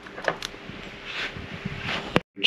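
Light handling noise: a few small clicks and a soft rustle from a steel feeler gauge being worked at the valve rockers of a stopped outboard engine.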